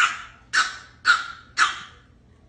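A small puppy barking in short, high yaps, four in a row at about two a second.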